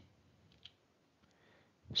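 A quiet pause with a single faint, short click a little over half a second in.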